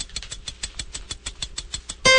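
Rapid, even ticking, about ten ticks a second, from a clock-tick sound effect leading into a radio station's time check.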